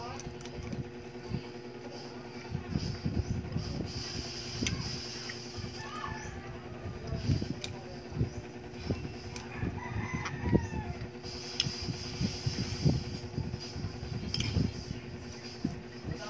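Close-up eating sounds: chewing and hand-to-mouth eating of rice and fried fish, with irregular soft thumps and clicks. A rooster crows in the background a couple of times, about six and ten seconds in.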